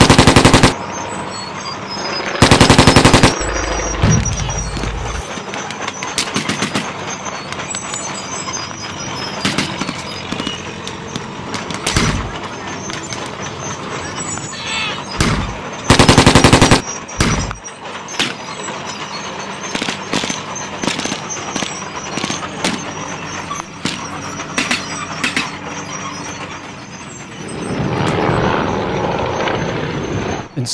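Re-enactment battle gunfire: scattered blank rifle shots throughout, with loud bursts of machine-gun fire at the start, around three seconds and about sixteen seconds in, the early burst followed by a low rumble. Near the end a Bristol Fighter biplane's engine swells as it flies past.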